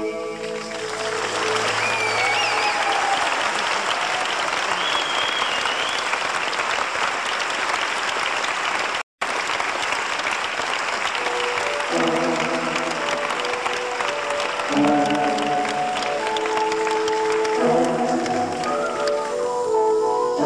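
Concert audience applauding and cheering, with a few whistles, as a song ends; the tape drops out for a split second about nine seconds in. About twelve seconds in, keyboard notes of the next song start in stepped, held tones over the fading applause.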